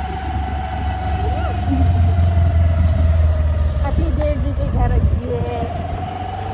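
A road vehicle running steadily, heard from on board: a low rumble with wind on the microphone and a steady whine through it.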